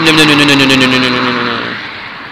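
A car passing close by on the road. The tyre and engine noise is loudest right at the start and fades over about two seconds, and the engine's hum drops slightly in pitch as it moves away.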